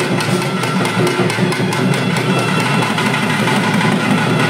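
Loud, rapid, steady drumming on barrel drums, with a few high held notes from an instrument over the beat.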